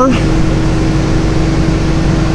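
Steady machine hum: a constant low drone with one held tone, unchanging throughout.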